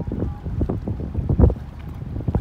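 Wind gusting on the microphone in uneven low rumbles, over small waves lapping at the shore.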